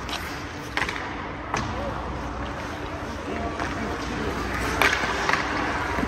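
Ice hockey skates scraping and carving on rink ice, broken by several sharp clacks of sticks and pucks, the loudest about five seconds in.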